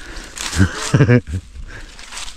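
Dry leaf litter and twigs rustling and crunching underfoot, with a short vocal sound from the man about halfway through.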